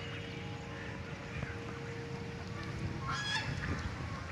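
A goose honks once, briefly, about three seconds in, over steady low background noise.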